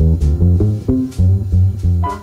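Jazz trio playing an instrumental passage of a slow ballad: plucked upright bass notes stand out in a running line, with piano and light cymbal strokes.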